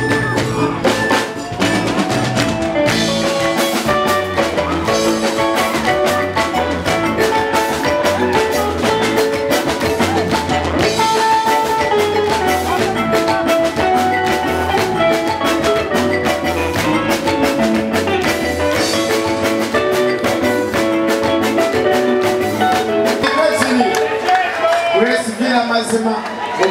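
Live performance of a Kiga song: acoustic guitar and percussion keeping a steady beat with handclaps, under a male lead voice and a children's choir.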